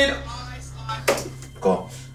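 A man's sung vocal line trailing off over a steady low studio hum. A short sharp click comes about a second in, and a brief voiced sound near the end.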